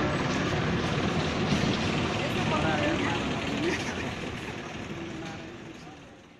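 Outdoor street noise with indistinct voices of people talking in the background, steady throughout and fading out near the end.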